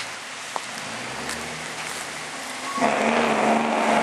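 Tractor-trailer milk truck's engine brake (Jake brake) cutting in about three seconds in: a loud, steady, rapid rattle over a low drone, which the uploader thinks sounds straight-piped. Before it, a steady hiss.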